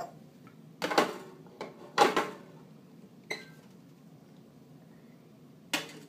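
Metal clunks and scrapes from a portafilter being fitted and locked into a Rancilio Silvia espresso machine's group head, and glass knocks from shot glasses set on the steel drip tray: a few separate clatters, the loudest about two seconds in.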